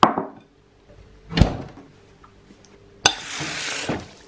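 A bowl being handled: a sharp clack, then a thud about a second later. Near the end, about a second of steady hissing water runs onto the fried noodles to re-moisten them, then cuts off abruptly.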